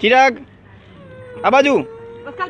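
A cat meowing twice, two drawn-out calls about a second and a half apart, each rising and then falling in pitch.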